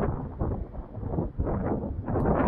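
Wind buffeting the microphone outdoors: an uneven low rumble that surges and dips in irregular gusts.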